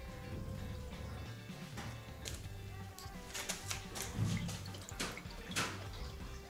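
Water flowing into a copper-pipe heating convector through its just-opened ball valves: a faint hiss and gurgle in the pipes with slowly wavering whistle-like tones, and a few light clicks.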